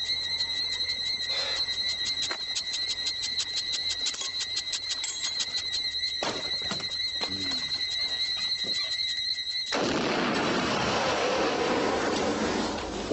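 A steady high whine crackles rapidly for about ten seconds. It then cuts off into a sudden loud, noisy blast that lasts a few seconds, like an explosion.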